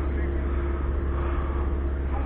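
A car engine running with a steady low rumble and a faint steady hum over it.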